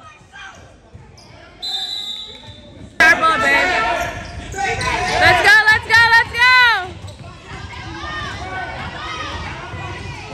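Basketball being dribbled on a hardwood gym floor during a children's game, with echoing shouts and high squeals from the court. The sound jumps suddenly louder about three seconds in, and the loudest squeals and shouts come in the middle.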